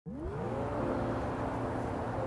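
An engine-like sound that rises quickly in pitch and then holds a steady pitched hum: an intro sound effect.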